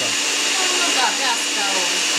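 Moulinex electric stand mixer running steadily, its beaters working butter, sugar and egg as flour is added a little at a time for shortcrust dough. The motor gives an even whirring hum with a thin high whine over it.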